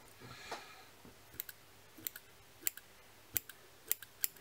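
Fine fly-tying scissors snipping synthetic fibre: a series of short, sharp clicks at uneven intervals as the head of a sea bass fly is trimmed to shape.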